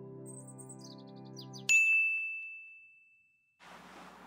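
A held music chord fades under a quick run of high, descending twinkling notes, then a single bright chime ding strikes near the middle and rings out for over a second.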